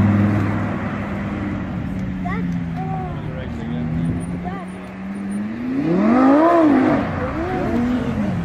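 Audi R8 sports car's engine running at a steady note as it drives round the roundabout, its pitch sliding slightly lower, then a note that rises and falls again about six seconds in.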